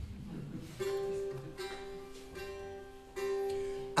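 Instrumental opening of a song: four chords struck roughly once a second, each left ringing.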